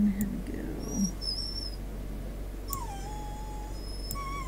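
A dog whining for attention. There is a short, very high, thin whine about a second in, then a longer whine that dips in pitch and holds steady for about a second.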